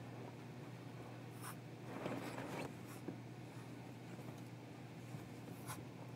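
Bedding rustling and scuffing as blankets are pulled and shaken out over the bed, in a few brief scratchy bursts, over a steady low hum.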